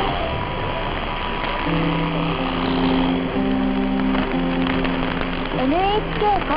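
A simple music theme of held notes received as a long-distance mediumwave AM broadcast from NHK Radio 2 on 747 kHz, under a constant hiss and crackle of static. A man's voice starts an announcement near the end.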